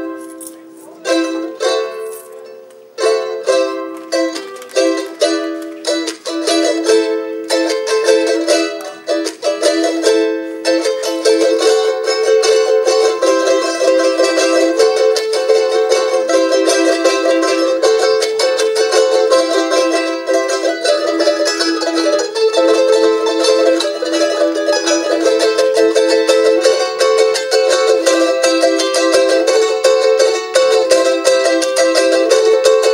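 Solo small guitar-like plucked string instrument with a high, bright range and no bass notes: separate plucked notes and chords for the first ten seconds or so, then a fast, continuous run of repeated notes.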